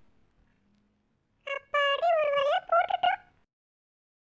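A high, squeaky call in a few short, sliding phrases, starting about a second and a half in and lasting about two seconds.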